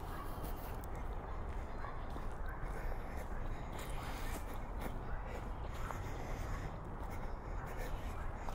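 Footsteps on a dirt path strewn with dry leaves, with faint irregular crunches and scuffs, over a steady low outdoor rumble.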